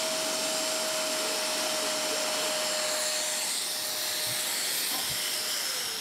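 Shark MessMaster portable wet/dry vacuum running steadily, its hose nozzle pressed into a bathroom sink drain and sucking out hair and grime. It makes a continuous rushing noise with a steady whine, and the whine sinks slightly and fades near the end.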